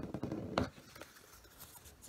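Magazine paper being folded and creased by hand on a wooden tabletop: faint rustling and rubbing, with one sharp click about half a second in.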